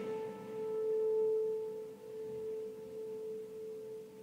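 The sustained tail of a single piano note struck just before, ringing on as a near-pure tone while its upper overtones die away, wavering slightly in loudness.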